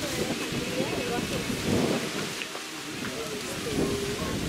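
Wind buffeting the camera microphone in gusts, a rumbling, rain-like rush, with faint, indistinct voices of people talking in the background.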